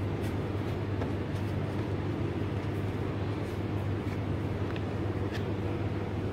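A steady low machine hum, with a few faint light taps as a ball of dough is worked by hand on a plastic cutting board.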